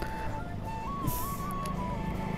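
Background music carrying a simple flute-like melody, over a low engine hum that becomes steadier and louder in the second half.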